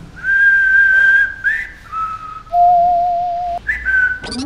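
A short tune whistled in a few held notes. It drops to a lower, slightly wavering note in the second half and rises again near the end.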